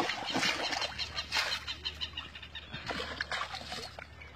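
Water splashing as a plastic tub is dipped and emptied into a pond at the bank, in uneven bursts, loudest in the first second.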